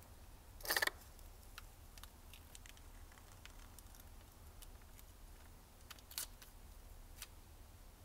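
Faint handling sounds of a small watch display, thin wire and clear tape being worked by hand: scattered light clicks, with a short rustling noise about a second in and another about six seconds in, over a low steady hum.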